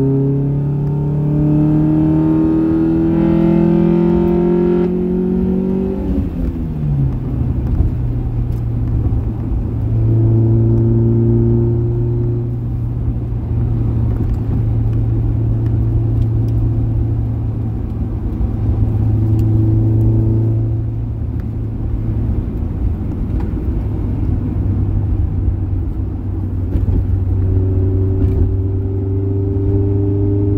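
Honda Prelude's G23 four-cylinder engine (F23 block, H22 head), heard from inside the cabin. It pulls with a steadily rising note for about the first five seconds, then drops back and runs at a steady lower note for the rest, swelling a little a few times.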